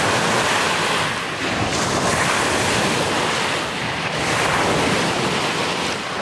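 Waves breaking and washing up a pebble lakeshore, a steady rushing that swells and eases, with wind buffeting the microphone.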